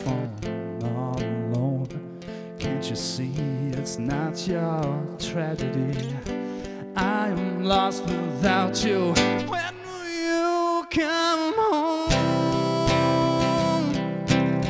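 A man singing a slow, sad ballad while strumming an acoustic guitar. Near the end the guitar drops out for about two seconds under the voice, then the strumming comes back in.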